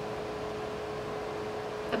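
Steady room noise: an even hiss with a faint constant hum.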